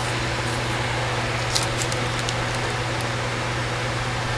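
Steady low hum with an even hiss, like a fan or air conditioner running in a small room, and a few faint light clicks about a second and a half and two seconds in.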